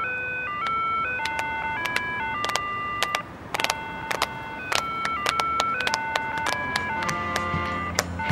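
A Japanese pedestrian crossing signal playing its electronic melody in plain beeping tones, with several people clapping their hands along to it.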